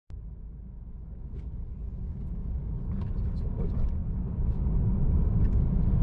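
Low, steady rumble of a car idling, heard inside the cabin, fading in and growing louder, with a few faint clicks.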